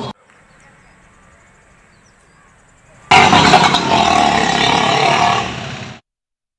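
Faint hiss for about three seconds, then a loud motorcycle engine comes in suddenly and runs for about two and a half seconds before fading.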